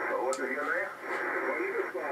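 A radio amateur's voice received in single sideband on the 20-metre amateur band and played through the SDR receiver's audio. It is thin and narrow-sounding, with faint hiss behind it.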